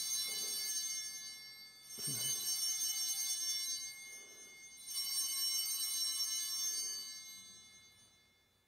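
Altar bells rung at the elevation of the consecrated chalice. One ring is already sounding, then two more come about 2 and 5 seconds in. Each rings on with many bright high tones and fades slowly.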